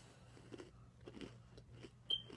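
Faint chewing of an Oreo cookie, a few soft, irregular mouth sounds.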